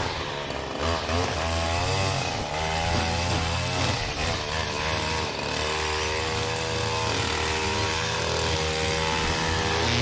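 Stihl KM94 two-stroke line trimmer running, its engine revving up and down as it cuts grass.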